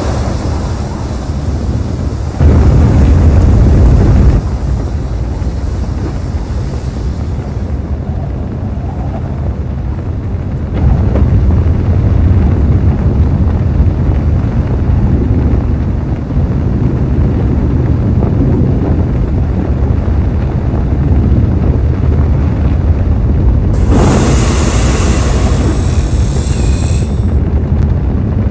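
Sound effect of rocket thrusters firing on a landing spacecraft: a steady low rumble with hiss, swelling louder about two seconds in, with a bright hissing stretch near the end.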